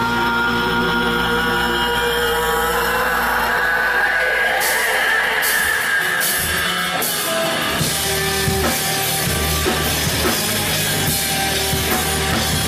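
Live rock band playing loud: electric bass, guitars and drum kit. About halfway through the low end drops out for a moment, then the bass and drums come back in.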